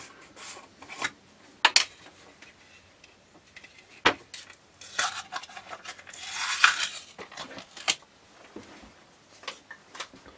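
Handling a metal jar lid on a countertop: sharp clicks and knocks as the screw lid comes off the glass jar and is set down. About six to seven seconds in there is a short papery rustle as the jar's inner seal is peeled off.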